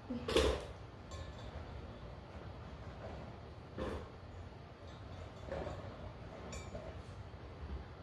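Whole Scotch bonnet peppers dropped by the handful into a blender jar: a few soft knocks and rustles, the loudest just after the start and another about four seconds in, over a quiet background.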